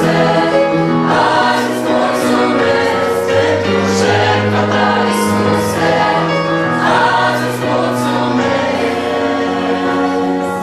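Mixed choir of young men and women singing a Romanian gospel hymn together, steady sustained chords throughout.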